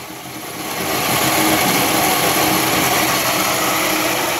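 Large pulse motor running, its big drum rotor spinning on full ceramic bearings with a steady whirring hiss that grows louder over the first second and then holds steady.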